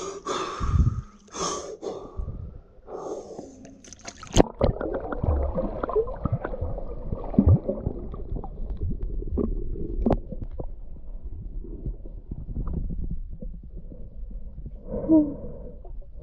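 A freediver takes several deep, noisy breaths at the surface. About four seconds in, the camera goes under the water with a sharp splash. After that the sound turns muffled: a low underwater rumble with gurgles and occasional clicks as he dives.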